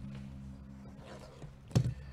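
A low steady hum, then near the end a single short knock as a hand takes hold of the cardboard hobby box.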